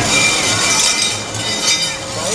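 Metal chains and seats of a chain swing ride clinking and jangling as the empty seats sway after the ride stops, with people's voices.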